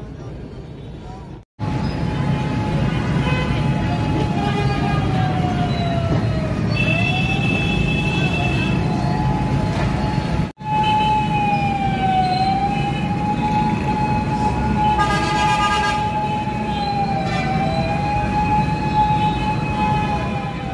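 Heavy city traffic rumbling, with a siren holding one loud, steady high note that sags in pitch and climbs back every few seconds.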